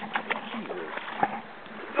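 Shallow river water running along the bank, a steady wash, with a small knock about a second in.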